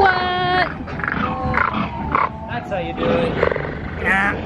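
A held, howl-like call that drops in pitch at its end, followed by growling, animal-like vocal sounds.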